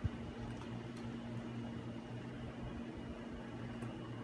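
Quiet room background: a steady low hum with a faint hiss, broken only by a couple of faint ticks, about a second in and near the end.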